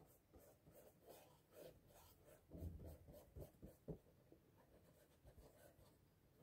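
Faint scratchy strokes of a paintbrush applying paint, with a few soft knocks in the middle.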